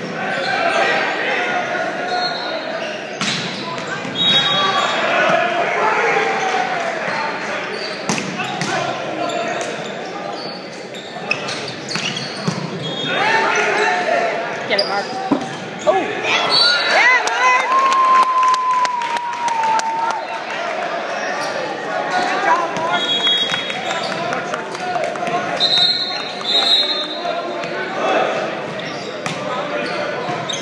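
Volleyball being played on a hardwood gym floor: sharp smacks of the ball on serves and hits, and short high squeaks of sneakers on the hardwood. Under them runs constant chatter and calls from players and spectators, echoing in the large hall.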